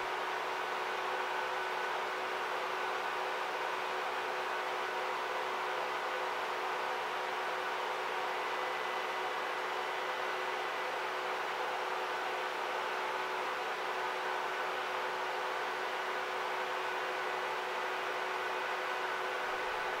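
A steady, even whirring hum, like a fan or machine drone, with a few faint steady tones in it and no change throughout.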